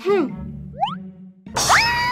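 Cartoon sound effects over children's background music: a short springy boing, a quick rising whistle about a second in, then a loud, held alarmed cry as a dramatic music sting comes in.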